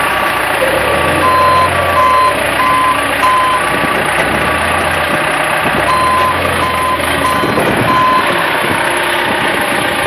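Hyster forklift's reversing alarm beeping about twice a second in two short runs as the forklift backs away, over the steady hum of its running engine.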